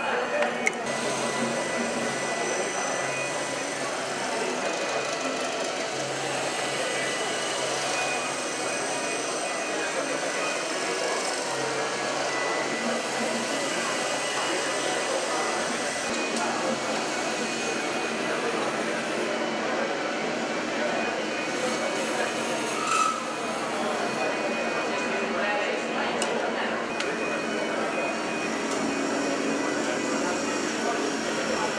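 Wood lathes running while turners cut spinning wood with hand gouges, over a steady background of voices.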